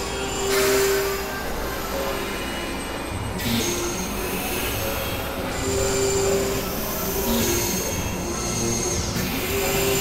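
Experimental synthesizer noise music: held mid-pitched tones that come and go about a second at a time over a dense noise bed, with thin high whistling tones and bands of hiss that swell and cut off every few seconds.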